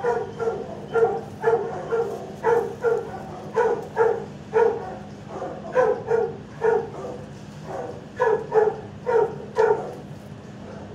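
A dog barking repeatedly, about two barks a second, in runs with short pauses around the middle. A steady low hum runs underneath.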